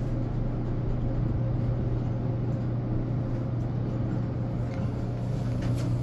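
Steady low hum inside a Dover traction elevator car, with a few faint clicks near the end.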